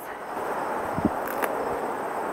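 Steady rustling of grass and leaves as fresh grass is pulled up by hand, with a dull thump about a second in.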